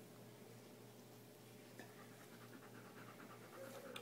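Near silence with a dog's faint panting, more noticeable in the second half.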